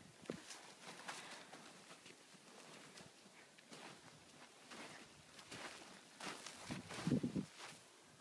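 Faint footsteps crunching in snow, irregular and soft, with one louder short sound near the end.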